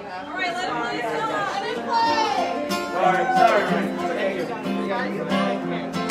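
Acoustic guitar playing under the chatter of a small audience in the room, with held guitar notes coming in about two seconds in.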